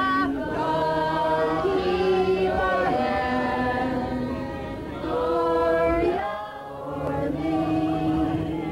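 A choir singing slow, sustained chords in several parts, with a short break between phrases about six and a half seconds in.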